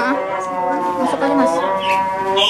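Voices singing in long held, sliding notes, several voices overlapping.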